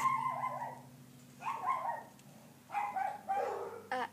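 Four short, high-pitched whimpering cries with brief pauses between them.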